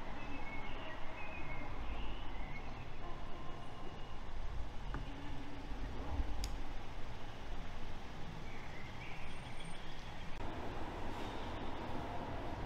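Low, steady rumble of street traffic outside a building, with a few faint, brief distant sounds and a single click about six and a half seconds in. Near the end the background changes to the fuller, even hum of a large indoor station hall.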